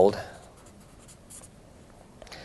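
A man's voice trailing off at the end of a word, then a pause of quiet room noise with faint scratching.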